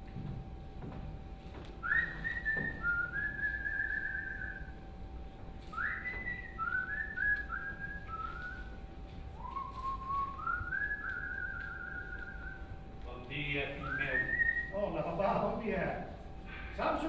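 A person whistling a tune in three phrases with short pauses between them, each phrase opening with a quick upward slide.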